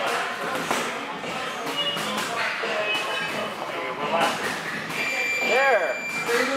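Busy boxing gym ambience: voices in the room and music playing, with scattered short knocks.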